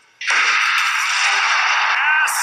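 Starting gun of a 100 m sprint, then a stadium crowd breaking into a loud, steady cheer as the sprinters leave the blocks. The shot and the crowd come in together suddenly, about a fifth of a second in, out of near silence.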